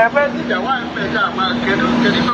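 A person talking, somewhat quieter than the talk just before, over a steady humming tone.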